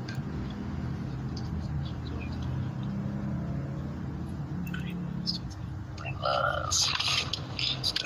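Steady low drone of a car's engine and road noise heard inside the cabin while driving. Brief muffled voices come in about six seconds in.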